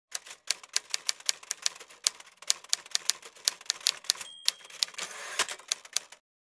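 Typewriter keys clacking in an irregular run of sharp strikes, several a second, used as a typing sound effect. A brief bell ding comes a little past four seconds, then a short rasping carriage-return sweep, before the sound cuts off at the end.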